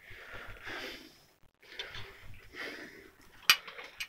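Faint breathing-like rustling from someone moving about, with one sharp click about three and a half seconds in.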